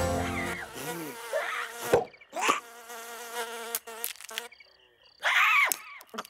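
Cartoon sound effect of a small glowing flying insect buzzing in several short passes, with clicks and pitch sweeps between them and a louder rising-and-falling burst about five seconds in.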